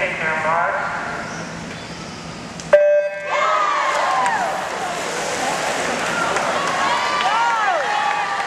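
A swim meet's electronic start signal gives one short steady beep about three seconds in, sending the relay's lead-off swimmers off the blocks. Teammates and spectators then yell and cheer.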